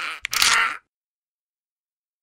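A short, harsh bone-crunching sound effect in two quick bursts that cuts off abruptly under a second in.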